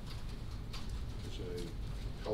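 Hum of a meeting room, with a few faint handling clicks and a brief low murmured voice about one and a half seconds in.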